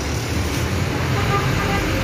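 Steady background din of street traffic, a low rumble with faint voices mixed in.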